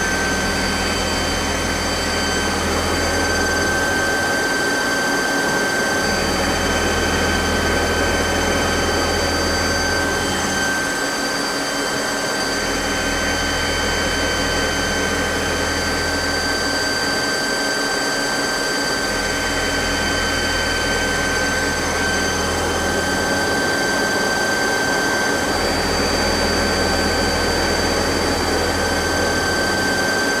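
Mazak CNC lathe's live-tooling endmill roughing a hex in the end of a bar under flood coolant, in a milling holder whose bearings are worn: a steady high whine over the hiss of coolant spray. A low drone sets in and drops out about every six seconds.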